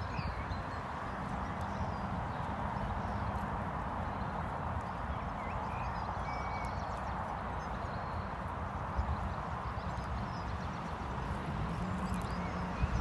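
A horse walking on grass, its hooves landing in soft, uneven steps, over a steady outdoor background rush.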